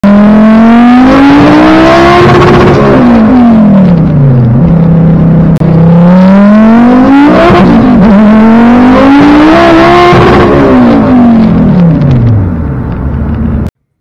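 Volvo 850 T-5R's turbocharged five-cylinder engine, heard from inside the cabin, pulling hard. The revs climb and then fall away, then climb again through a quick shift about seven and a half seconds in before falling once more. The sound cuts off sharply near the end.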